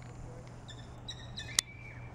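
Small bird chirping: a quick run of short, high notes about a second in. A single sharp click follows, the loudest sound, all over a steady low hum.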